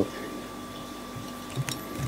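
Quiet room tone with a steady faint hum, and a single light click about one and a half seconds in.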